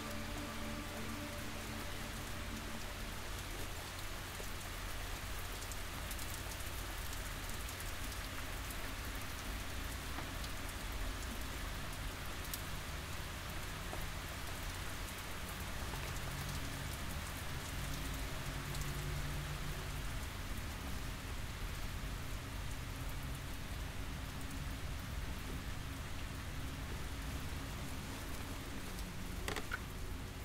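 A steady, even hiss with a low rumble underneath, unchanging throughout.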